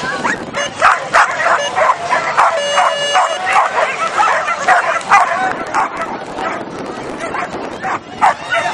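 Flyball dogs barking and yipping excitedly, a rapid string of sharp barks in quick succession, keyed up at the start of a race. A brief steady electronic tone sounds about three seconds in.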